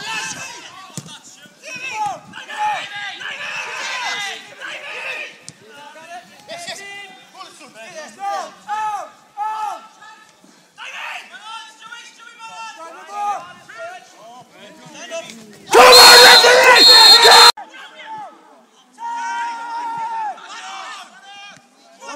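Men's voices shouting on and around a football pitch during play, with one very loud, distorted burst close to the microphone lasting under two seconds, about two-thirds of the way through.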